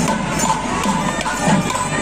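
Street procession band playing: a slung barrel drum and jingling percussion beaten in a quick, steady rhythm, with a crowd in the background.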